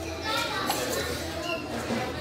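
Indistinct background chatter of diners in a busy room, with a child's voice among them.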